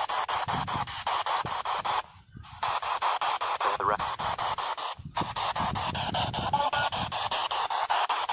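Spirit box radio scanner sweeping through stations: rapid, evenly chopped bursts of static, many a second. It cuts out briefly about two seconds in and dips again around five seconds.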